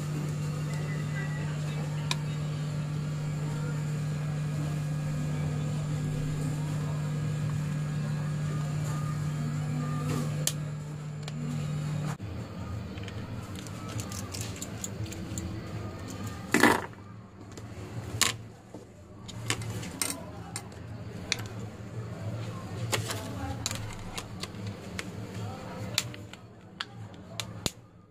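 Small precision screwdriver and plastic and metal phone housing parts clicking and tapping as a Samsung Galaxy J7 (J700H) is reassembled by hand, with the sharpest click about seventeen seconds in. A steady electrical hum runs under the first twelve seconds, then stops.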